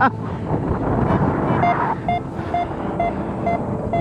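Wind rushing over the microphone as a paraglider gets airborne. From a little before halfway, a paragliding variometer gives a row of short, even beeps, about two a second, signalling that the glider is climbing.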